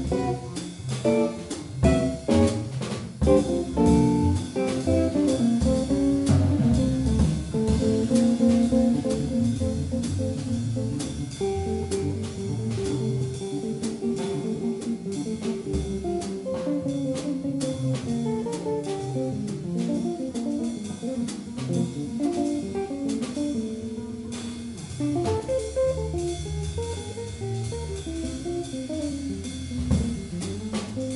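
Small jazz group playing: an archtop electric guitar carries a line of quick single notes, backed by upright double bass and a drum kit with cymbals.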